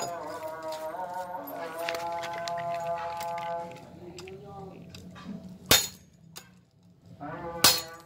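Spring-steel wakizashi blade chopping a steel chain laid over an anvil: two sharp metallic strikes about two seconds apart near the end, cutting the chain through.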